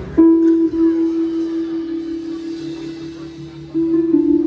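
Live band opening a slow song with long held notes and no drums; a faint pulsing low note comes in about halfway, and a new note enters near the end.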